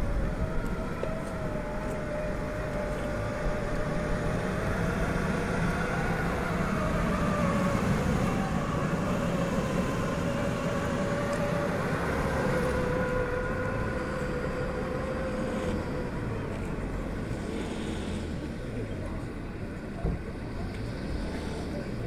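An open Maruti Gypsy jeep driving slowly, its engine running with a steady whine that wavers slightly in pitch and fades away about three quarters of the way through. There is a short knock near the end.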